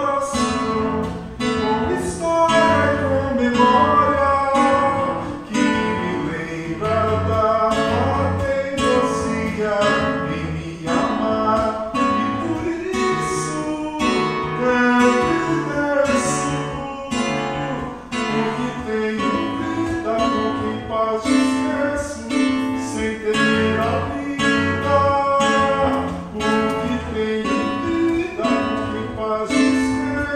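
Live acoustic guitar music: a nylon-string cutaway guitar strummed and picked in a steady rhythm.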